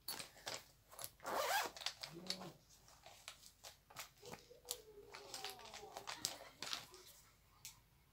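Makeup being rummaged through: a zip on a makeup case pulled open about a second in, then a run of light clicks, taps and rustles as compacts and brushes are picked up and handled.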